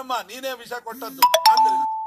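A bell-like metallic chime, three quick strikes about a second in, then a clear ringing tone that hangs on for about a second, heard over a man speaking.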